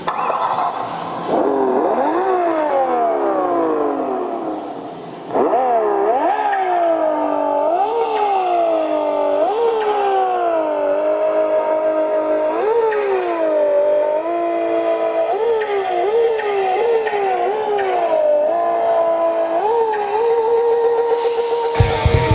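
Car engine sound revving and running up through the gears: the pitch falls away over the first few seconds, then, after a loud start about five seconds in, climbs and drops back again and again like gear shifts, and holds steady near the end.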